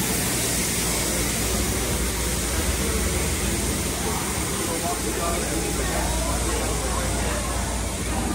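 Steady rushing noise of wind on the microphone, with faint voices in the background.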